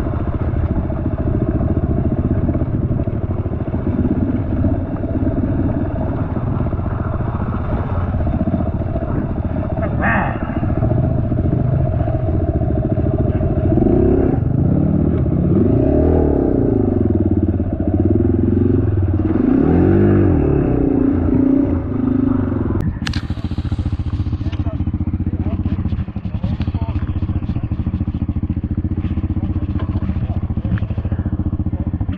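Suzuki DR-Z dirt bike's single-cylinder four-stroke engine heard from on board while riding a rough track, the revs rising and falling repeatedly in the middle stretch. About 23 seconds in the sound changes suddenly, with a sharp crack, to another dirt bike's engine running.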